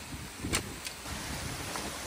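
Water rushing through a breach in a beaver dam, a steady hiss, with two short sharp knocks about half a second apart early on as dam sticks are worked loose.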